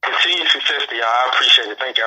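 A person speaking over a telephone line. The voice sounds thin and tinny, with no low end.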